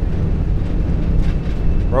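Jet airliner's engines at takeoff thrust during the takeoff roll, just past V1: a loud, steady, deep rumble.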